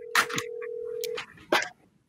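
Telephone ringback tone of an outgoing call ringing through: one steady tone that cuts off about a second in, with a few short noises over it.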